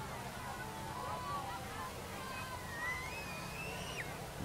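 Faint open-air background with a steady low hum and faint, distant voices.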